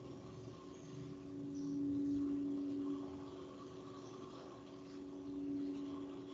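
A steady low hum over faint hiss, swelling louder about a second in and again near the end.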